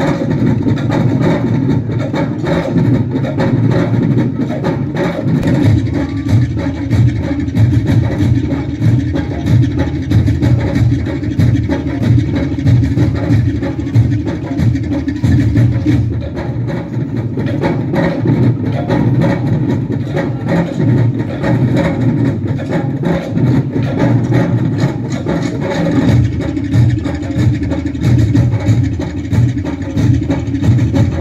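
Tahitian dance drumming: a percussion ensemble of wooden slit drums (tō'ere) and skin drums beating a fast, dense, rolling rhythm without pause.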